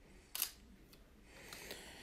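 A camera shutter firing once: a short, sharp click about half a second in, with little else heard.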